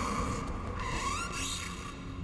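Quiet film-clip soundtrack: faint, odd gliding tones in the first half, then a low steady hum.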